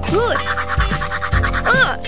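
Cartoon tooth-brushing sound effect, a quick back-and-forth scrubbing over cheerful background music. A short pitched sound that rises and falls comes near the start and again near the end.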